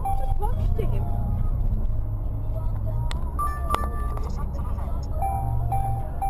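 Steady low rumble of a vehicle driving at motorway speed, with a person's voice exclaiming in the first second. Short beeps sound in a quick row at the start and again near the end.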